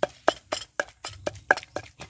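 Wooden pestle pounding in a clay mortar: a quick, uneven run of sharp knocks, about seven strokes in two seconds.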